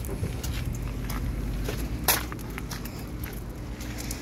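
Footsteps on gravel, with scattered small clicks, a sharp knock about two seconds in, and a steady low rumble underneath.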